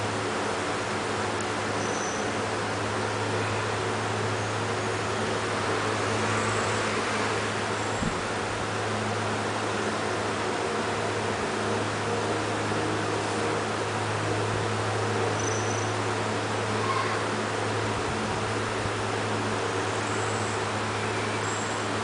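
Steady room noise: an even hiss over a constant low hum, like a fan or air-conditioning unit running.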